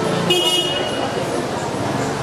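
A short vehicle horn toot about a third of a second in, over the steady chatter of a crowded street.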